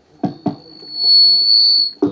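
Public-address feedback: a single high, steady squeal that swells loudest over the second half. Two sharp clicks sound near the start.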